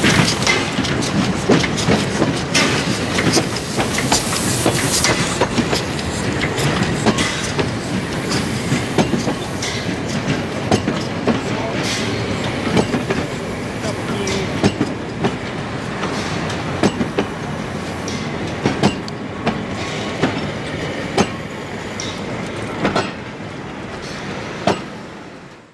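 A steam tank locomotive and its two-axle passenger coaches rolling past at low speed. The wheels click over the rail joints in a steady run of knocks, and the sound slowly fades as the train moves away.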